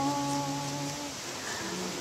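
A woman's voice holding one low, steady note of a lullaby for about a second, then fading. A softer note follows near the end. The steady rush of a waterfall runs underneath.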